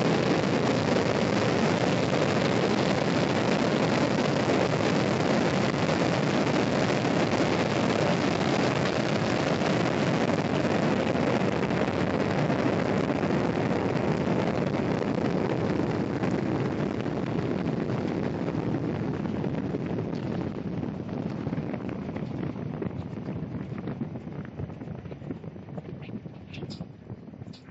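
Wind tunnel airflow rushing over an inside-out umbrella, as a steady even roar that fades gradually over the second half as the tunnel's wind speed is run down from about 53 mph to under 20 mph.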